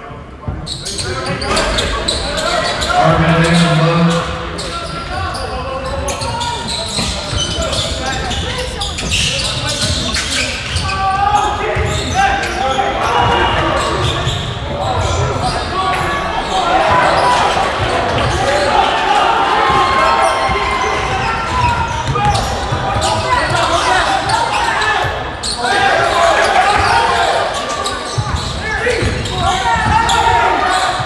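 Many spectators talking and shouting in a gymnasium, with a basketball bouncing on the hardwood court during play.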